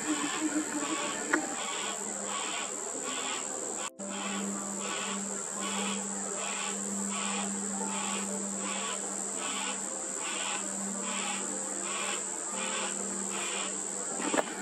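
Yellow-tailed black cockatoo chick begging: a rasping call repeated in an even rhythm, about two to three times a second, calling for its parent. A steady high-pitched drone runs under it, and a low steady hum joins about four seconds in.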